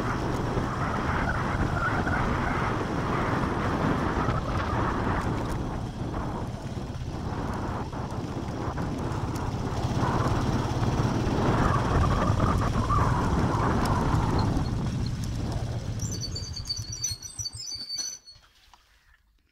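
Small motorcycle engine running steadily while riding, with wind noise on the microphone. Near the end the engine noise fades away and birds chirp.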